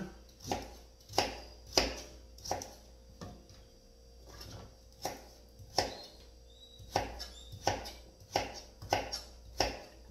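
Kitchen knife chopping Japanese pumpkin into cubes on a plastic cutting board. There are about a dozen sharp chops, one to two a second, with a pause of about two seconds in the middle.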